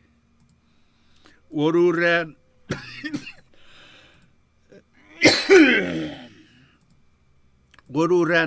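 A man coughing into his fist close to the microphone: a short held vocal sound and a click first, then one loud cough with a falling tail about five seconds in.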